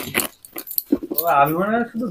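A few sharp clicks and light rattles of a plastic lunch box being unlatched and opened. About halfway through, a drawn-out voice comes in and is the loudest sound.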